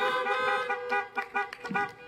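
Several car horns honking at once, overlapping steady tones that break off one by one and fade near the end.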